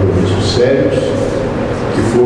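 Speech only: a man speaking Portuguese into a podium microphone.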